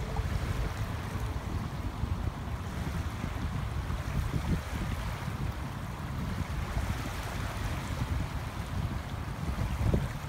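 Wind buffeting the phone's microphone in a low, fluttering rumble, over small waves lapping in shallow choppy water.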